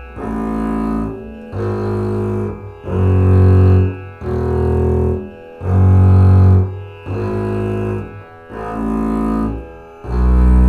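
Double bass played with the bow, slowly sounding the separate notes of a two-octave E major scale. Each note is held for about a second with a short break before the next, about seven notes in all.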